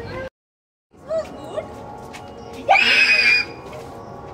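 A loud, high-pitched scream or shriek, under a second long, near the end, with brief voices before it and a steady background hum. The sound cuts out completely for about half a second near the start.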